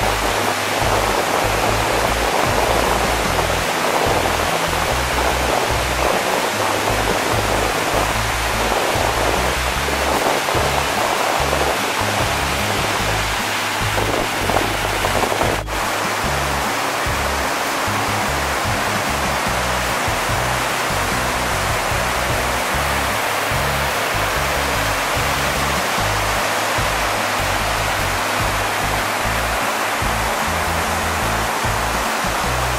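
Steady roar of a waterfall and rushing creek water, with a brief break about halfway through.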